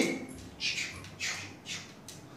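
A man's short, hissing mouth sounds, three quick breathy bursts about half a second apart, made as playful sound effects rather than words.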